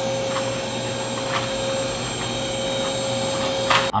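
Vacuum cleaner running steadily with a constant whine, with a few faint knocks, then cutting off suddenly near the end.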